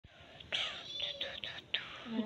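Hushed whispering voices, breathy and unvoiced.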